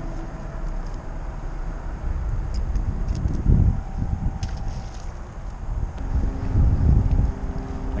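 Wind buffeting the microphone: a steady low rumble that swells in gusts about three and a half seconds in and again near the end, with a faint steady motor hum underneath.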